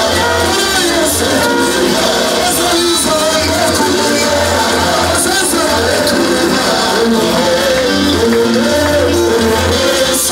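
Loud live gospel worship music: singing over a band with a bass line that repeats throughout.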